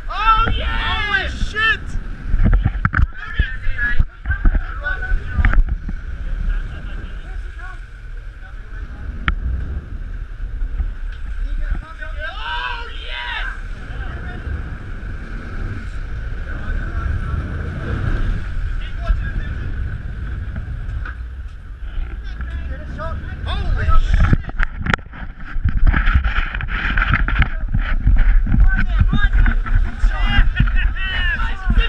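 Sport-fishing boat running hard astern, with heavy rushing and splashing water at the stern and wind on the microphone. Raised crew voices cut in at the start, about twelve seconds in, and over the last several seconds.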